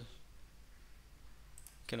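A faint computer mouse click near the end, as a record link in a web page is clicked, over quiet room tone; a man's voice starts right after it.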